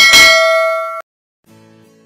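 Bell notification sound effect: a single struck ding that rings for about a second and then cuts off suddenly. Faint guitar music starts about half a second later.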